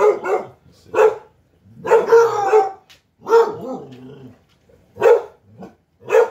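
A hound dog barking and baying in separate bursts: a short bark about a second in, two longer drawn-out bays in the middle, and another short bark near the end.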